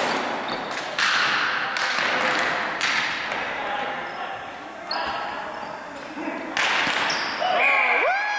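Hockey sticks and a plastic ball cracking and slapping on a hard gym floor, about half a dozen sharp hits, each echoing in the large hall. Voices call out near the end.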